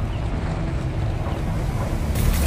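Steady low rumble under a rushing noise.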